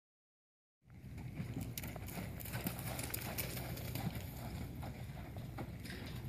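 A horse's hooves stepping on loose arena dirt as it moves around on a lunge line: soft, irregular knocks over steady low background noise, starting about a second in.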